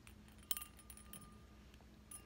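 A paper clip dropping into a clear cup: a single faint, sharp clink about half a second in, with a short ring after it.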